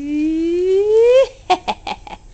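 A playful voiced "whoo" that slides steadily upward in pitch for over a second, followed by a few short bursts of laughter.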